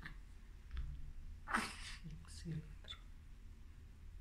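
Newborn baby fussing with short whimpers, and one louder breathy burst about one and a half seconds in.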